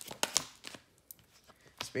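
Tarot cards being shuffled and handled: a quick run of sharp card clicks and snaps in the first second.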